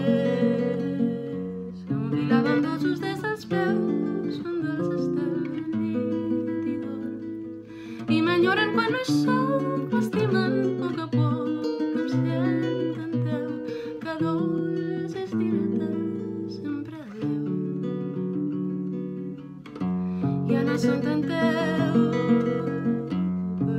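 A woman singing to her own plucked classical guitar accompaniment, the guitar playing continuous notes under the voice.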